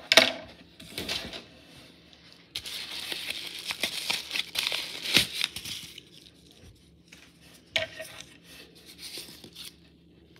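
A padded paper bubble mailer being ripped open: a sharp crackle at the start, then one long tearing sound lasting about three seconds, followed by crinkling and rustling as the envelope is handled.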